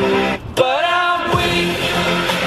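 A pop song playing with voices singing along. The music drops out briefly about half a second in, then resumes with a sung line gliding in pitch.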